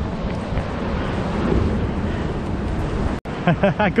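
Steady rushing noise of wind on the microphone mixed with surf washing against rocks, followed by a man laughing near the end.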